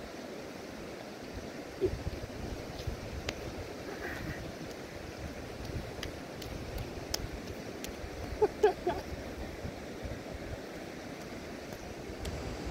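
Steady rushing noise of wind buffeting the microphone, with a short voice-like call about two-thirds of the way in and a few faint clicks.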